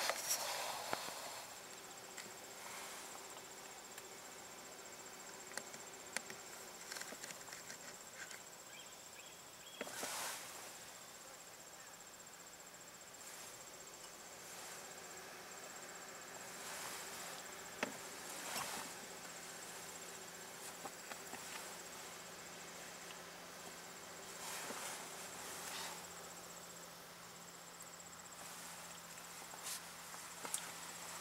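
Faint, steady insect chorus with one continuous high trill, with a few short soft bumps scattered through it.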